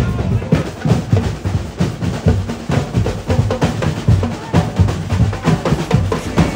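Street marching band drums, snares and bass drums, playing a fast, steady beat with several strikes a second.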